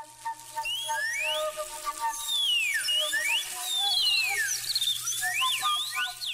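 Birds whistling: many overlapping calls gliding up and down in pitch, over a faint steady hum.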